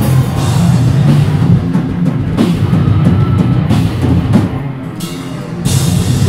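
Hardcore band playing live and loud: a full rock mix with a drum kit driving it. The band thins out briefly near the end, then comes back in at full force.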